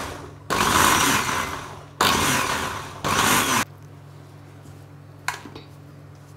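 Indian mixer grinder (mixie) whipping sugar, curds and fresh cream, switched on and off in short pulses for gentle whipping. There are four runs, the first already going at the start, each dying away as the motor winds down, and the last stops about three and a half seconds in.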